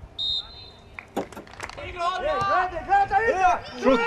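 One short steady blast of a referee's whistle, then men's voices rising into excited shouting, with cries of "šut!" (shoot!) near the end as an attack closes on goal.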